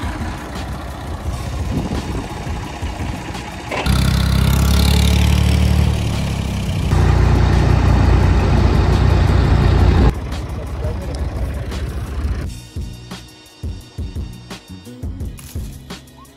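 Low rumble of a farm wagon ride on a dirt track, much louder for several seconds in the middle, giving way near the end to sparser, quieter sounds.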